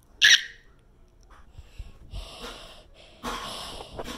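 Breath sounds and handling noise close to a phone's microphone: one loud, short, hissy puff about a quarter second in, then softer noisy breaths and rustling, louder again near the end.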